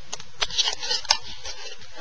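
Close handling noise: soft rustling with a few short, sharp clicks, the loudest a little after one second.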